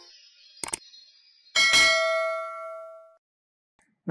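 A short double click like a button tap, then a single bright bell ding that rings out and fades over about a second and a half: a subscribe-and-bell-icon notification sound effect.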